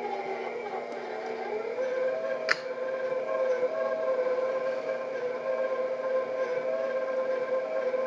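Electric stand mixer running with a steady whine as it beats butter and brown sugar, with eggs going into the bowl. Its pitch rises slightly about two seconds in, and there is one sharp click about half a second later.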